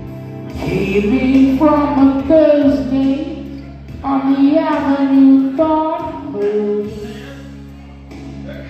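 A voice singing a slow karaoke song over a backing track, in two long phrases with held notes.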